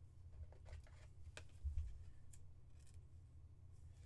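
Trading card being handled and slipped into a clear plastic sleeve: a few faint crisp clicks and rustles of card and plastic, with one soft low bump near the middle, over a low steady hum.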